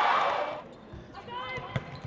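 Athletic shoes squeaking on a hardwood volleyball court, loud and bending in pitch in the first half second, then fainter short squeaks. A sharp hit of the volleyball comes near the end.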